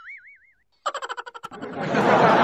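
A cartoon 'boing' sound effect: a springy, wobbling tone that fades out within the first half second. About a second in comes a fast rattle of clicks, then a swelling wash of noise near the end.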